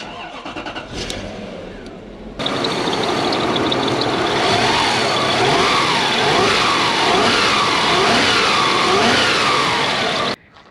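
Lexus SC400's 1UZ-FE V8 engine running, with a quieter mechanical sound for the first two seconds and then a sudden jump to full, loud engine noise. Its pitch rises and falls gently a few times in the second half.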